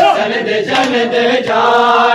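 Men's voices chanting a noha, a Shia mourning lament, in long sustained lines, with sharp slaps of matam (hands striking bare chests) about every three quarters of a second.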